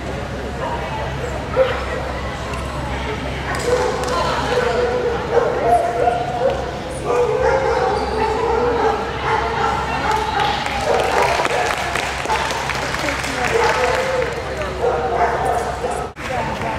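A dog barking and yipping repeatedly while it runs an agility course, over background voices.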